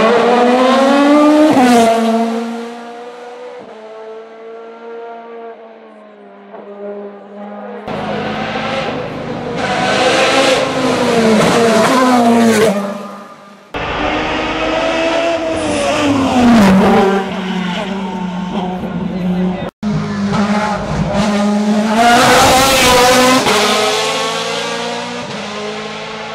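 Touring race cars at full throttle on a hill-climb road, several passes one after another. Each engine note climbs with the revs and bends down in pitch as the car goes by, with some tyre squeal.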